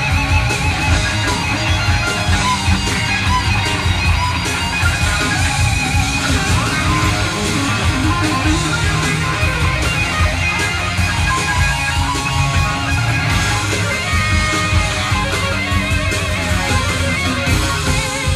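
Live rock band playing an instrumental passage: sustained electric guitar lines with vibrato over driving bass and drums.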